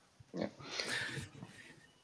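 A man's soft "yeah" followed by a quiet, breathy chuckle lasting about a second.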